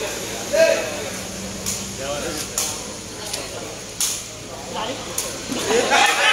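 Sharp cracks of a sepak takraw ball being kicked during a rally, five or six hits spread over a few seconds, with shouts and voices from players and crowd between them and a rising shout near the end.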